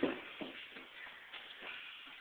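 Two people scuffling as they grapple, with shuffling feet and bodies and a few sudden knocks, the loudest right at the start.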